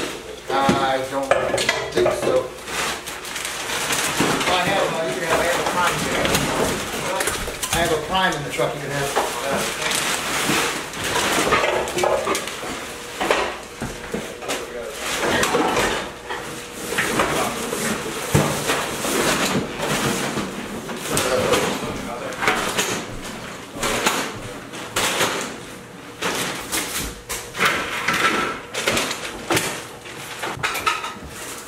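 Clutter being cleared out by hand: repeated clinks, knocks and clatter of household items being handled and tossed into black plastic trash bags, with some rustling of the bags.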